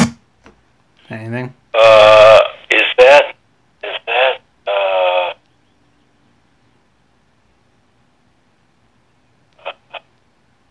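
A person's voice making a few short wordless vocal sounds with wavering pitch over about four seconds, then a long stretch of silence with two faint short sounds near the end.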